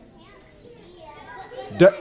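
Faint children's voices answering from the audience, a soft murmur of several young voices, until a man's voice starts loudly near the end.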